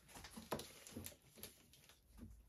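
Faint handling noises of a stretched canvas being gripped and shifted on a plastic-covered table: light taps and rubs, with one sharp click about half a second in.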